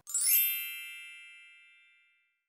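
Chime sound effect: a quick rising shimmer, then a bell-like ding that rings out and fades over about a second and a half.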